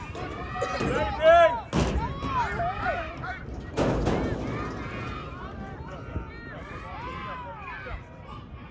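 Several people shouting and calling out across an American football field as the teams line up, with two sharp bangs about two seconds apart, the first about two seconds in.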